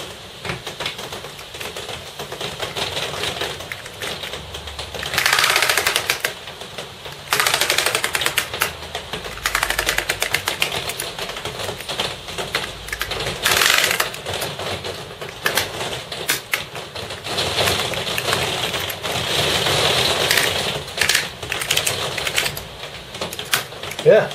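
Commodore Amiga A500 keyboard being typed on, its keys pressed in quick succession to test that each one registers after the keyboard controller chip was replaced. It is a dense run of clacking keystrokes, with louder flurries about five and fourteen seconds in.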